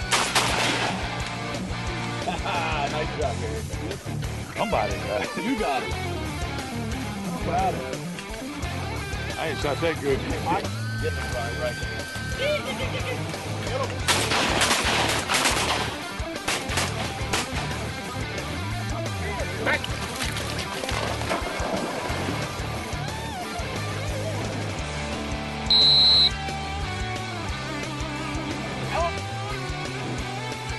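Background guitar music over shotgun blasts: one at the start and a rapid volley around the middle. Near the end, one short, loud, high whistle blast, a retriever whistle.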